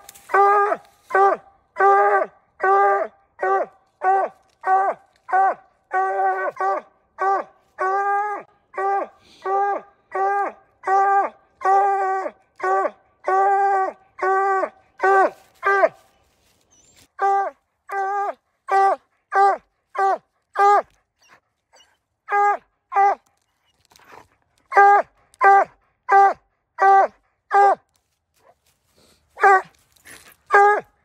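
A coonhound barking treed at the foot of a tree, the steady chop a hound gives when it has a raccoon up the tree. The barks come about three every two seconds for the first half, then in shorter runs with brief pauses.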